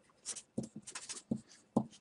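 Faint sound of writing: a handful of short, light scratching strokes.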